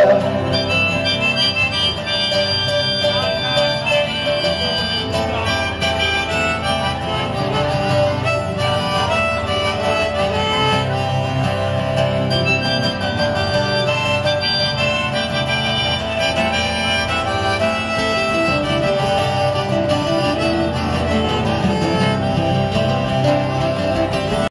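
Harmonica playing an instrumental break on a neck rack over two strummed acoustic guitars, with no singing.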